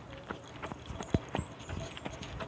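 Jogging footsteps on a concrete road, picked up by a handheld phone as uneven knocks and taps, several a second.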